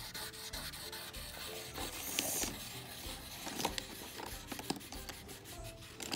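Wax crayon rubbing back and forth on paper laid on a table, a steady scratchy scribbling with a few light ticks as the strokes change.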